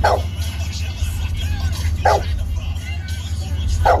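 A mastiff barking: three single barks about two seconds apart, each dropping in pitch, over steady background music.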